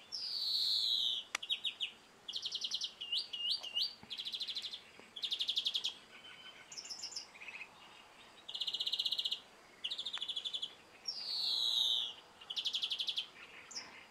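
European greenfinch singing: a string of short, fast trills, each under a second, broken by a long buzzy wheeze that falls in pitch at the start and again about 11 seconds in.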